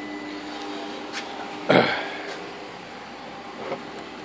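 Steady hum of the Opel Signum's 2.2 four-cylinder engine idling, with one short louder sound a little before two seconds in.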